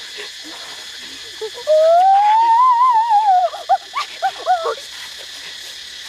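A boy's hooting call through pursed lips: one long note that slides up in pitch and back down, then a quick string of five or so short hoops.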